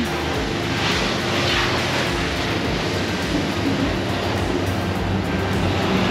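Steady vehicle engine noise, even and unbroken, with a faint low hum.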